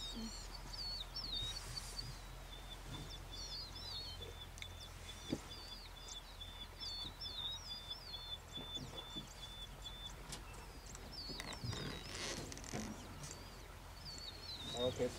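Wild birds calling in the bush: one repeats short wavering whistled phrases, while another gives a steady run of short evenly spaced notes, about four a second, from about two seconds in until about ten seconds in. A low steady hum lies underneath.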